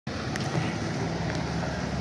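BMW X5 SUV's engine running steadily as the car creeps forward at walking pace, a low even hum.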